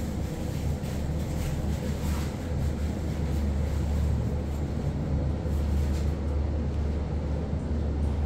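ThyssenKrupp passenger elevator car travelling upward, with a steady low rumble and hum from the ride.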